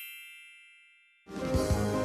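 A bell-like chime sound effect, several ringing tones together, fading out over about a second. Music starts near the end.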